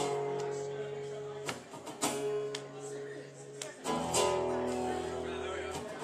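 Acoustic guitar strumming sustained chords as the instrumental introduction to a song. A deeper bass line joins about four seconds in.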